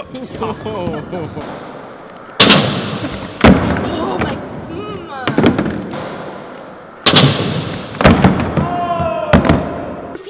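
Skateboard slapping and clacking hard on concrete in a large echoing indoor skatepark: five sharp hits, the loudest about two and a half and three and a half seconds in, each ringing on in the room, with voices between them.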